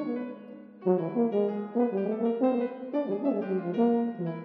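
Bass tuba (Yamaha YFB821S) and grand piano playing together, live. After a quieter first second they break into a busy passage of quick, short notes.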